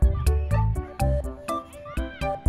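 Background music with a heavy, steady beat about twice a second and stepping melodic notes, with short high gliding sounds over it near the start and again near the end.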